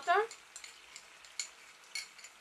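Faint steady sizzle of sliced red pepper and onion frying in a pan, with a few light clicks.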